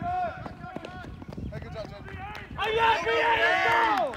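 People's voices calling out and shouting, several at once, swelling much louder a little past halfway into sustained yelling and cheering.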